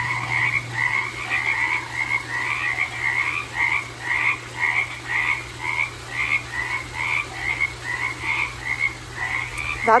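A chorus of frogs calling outdoors at night, many short croaking calls overlapping at about three a second.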